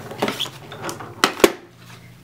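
Hard cutting plates and die clacking and knocking as they are handled and pulled out of a Fiskars FUSE die-cutting machine after a pass. There are a few light clicks, then two sharp knocks close together a little past the middle.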